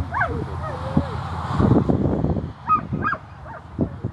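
Australian Cattle Dog giving a string of short yips and whines that bend up and down in pitch, over a low rumble of wind on the microphone.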